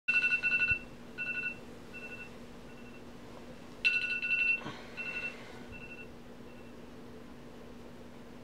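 Smartphone alarm going off: a burst of high electronic beeps, then fainter repeats that die away, sounding twice, about four seconds apart. A faint steady low hum runs underneath.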